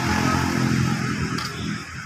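A steady low engine hum under a haze of outdoor background noise.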